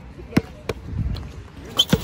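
Basketball bouncing on an outdoor hard court: a few sharp separate bounces over low background rumble.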